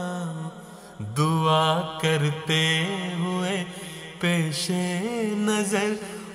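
A solo voice singing an Urdu nazm unaccompanied, in long held notes with ornamented, wavering turns. One phrase fades out about half a second in, and the next phrase begins about a second in.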